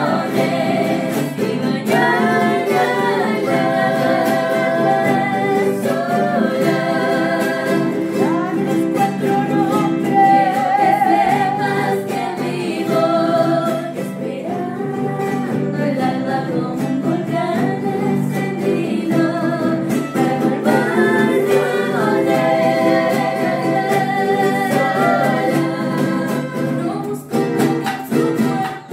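Several women singing together, accompanied by a strummed charango, acoustic guitars and a snare drum.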